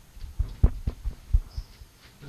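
Microphone handling noise: a lectern gooseneck microphone being gripped and adjusted by hand, giving several low, irregular thumps through the PA.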